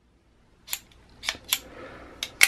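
Stainless steel Smith & Wesson 627 revolver's eight-shot cylinder being swung shut into the frame: three sharp metallic clicks in the second half.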